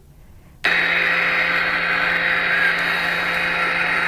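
Radio static from the Apollo 11 moon-landing transmission recording, played through a phone speaker: a steady hiss with a low hum that starts abruptly just under a second in.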